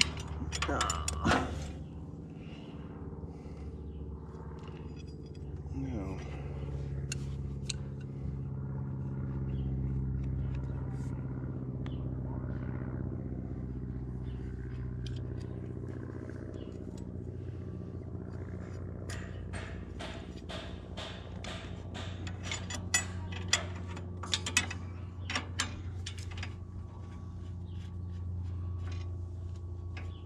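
An engine idling steadily, with sharp metal clinks and taps of a wrench working on the baler's knotter parts, clustered in the second half.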